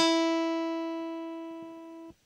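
Open high E string of an acoustic guitar plucked once, sounding the E that is the octave on the third of a C major chord; the single note rings and fades steadily.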